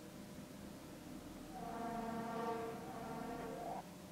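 A woman humming one steady note for about two seconds, pitched near her speaking voice, ending with a short upward slide.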